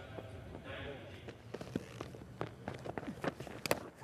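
Cricket stump-microphone sound: faint voices of players around the pitch, then a run of footsteps and light knocks during the bowler's run-up, ending in a sharp crack near the end as the ball comes off the batter's glove onto the stumps.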